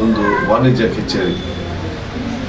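Only speech: a man talking, his voice rising and falling in pitch.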